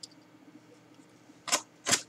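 Two sharp clicks close together, about a second and a half in, from a pair of scissors being handled.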